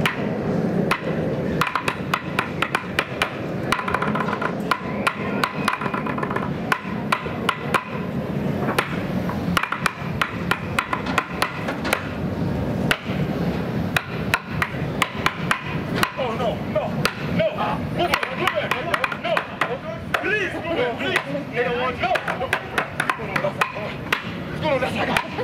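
Percussion played with sticks on everyday objects: a fast run of sharp strikes throughout, some ringing briefly with a steady tone. Voices join in over the last several seconds.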